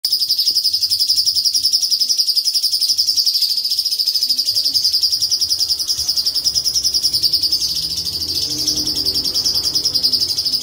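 A caged cucak cungkok leafbird singing a long, unbroken, very fast high rolling trill, its rapid notes running together without a pause.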